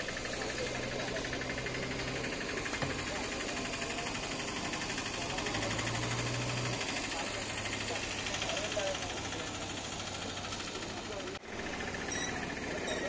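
A vehicle engine running steadily at idle, with faint bystanders' voices murmuring in the background.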